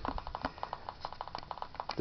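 Homemade electrostatic motor running on high voltage from a Cockcroft-Walton multiplier, giving a faint, rapid clicking of about ten small clicks a second as charge jumps and discharges across its rotor.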